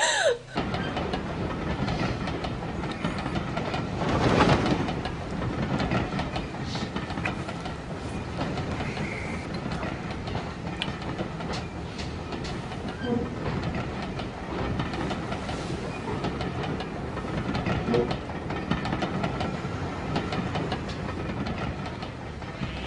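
A train running along the track, a steady rolling clatter with a louder swell about four seconds in.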